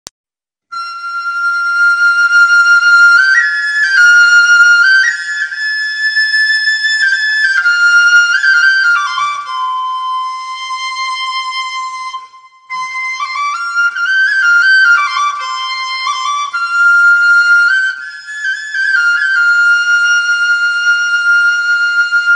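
Solo flute playing a slow, high melody in stepped notes with short slides, breaking off briefly about twelve seconds in: the instrumental introduction to a Tày folk song.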